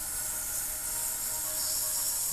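A steady airy hiss over a faint, sustained meditation-music drone.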